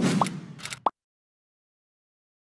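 A short sound effect lasting under a second, with two brief rising blips, that ends in a sharp click and cuts off to silence.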